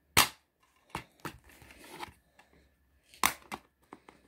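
Clear plastic DVD case snapping open with a sharp click, followed by lighter plastic clicks and handling noise, then another cluster of sharp clicks near the end as the disc is pried off the case's centre hub.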